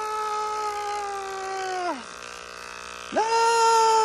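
A man's voice wailing a long, high, held "aaah" that slides down at its end after about two seconds. A second held wail starts about three seconds in.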